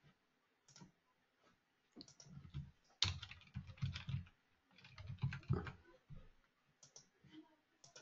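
Computer keyboard being typed on, faint, in a few short runs of keystrokes as a product name is typed into a form field.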